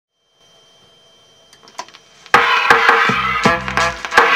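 A 7-inch vinyl single playing on a turntable: a faint hiss with a couple of small clicks, then about two seconds in the music starts loudly, with heavy bass and regular sharp beats.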